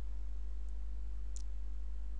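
Two faint computer-mouse clicks, about two-thirds of a second apart, over a steady low electrical hum on the recording.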